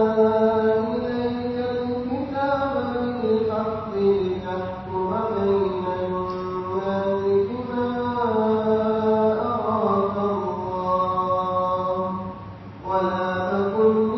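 A single voice reciting verses of Surat An-Nisa from the Quran in slow, melodic chanted tajweed, holding long notes that glide up and down. It breaks off briefly for breath about 12.5 seconds in.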